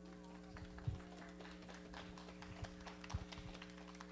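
Low, steady electrical hum from the sanctuary's sound system, with a few faint scattered knocks and thumps as people move about on stage.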